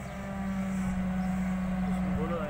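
Excavator digging a trench, its diesel engine running with a steady, even drone.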